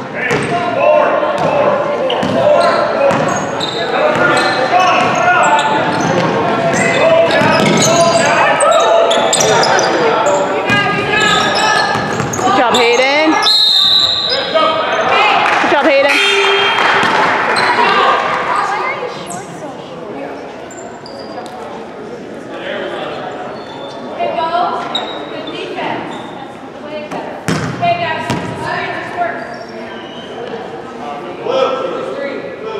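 Basketball game in an echoing gym: spectators' voices and shouts over a basketball bouncing on the hardwood floor. A short, high whistle blows about 14 seconds in, and the noise drops off after about 18 seconds when play stops.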